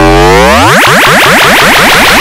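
Loud, heavily effects-processed TV logo sound, flanged and chorded: a dense stack of tones dips in pitch and rises again, then breaks into a fast run of short rising sweeps about a second in.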